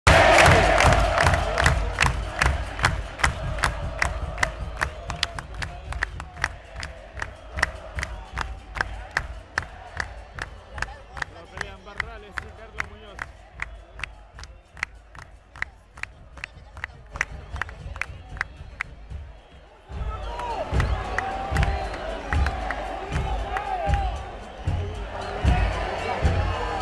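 Football stadium crowd: a loud roar at the start dies down, leaving a steady beat of about three a second from the stands under scattered shouts. About 20 seconds in, the sound jumps abruptly louder, with close shouting voices.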